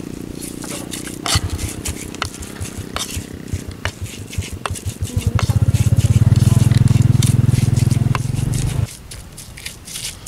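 Stone pestle grinding spice paste in a clay mortar (ulekan and cobek), a run of scraping strokes and light clicks. From about five seconds in, a loud, low, rapidly pulsing drone rises over the grinding and cuts off suddenly near nine seconds.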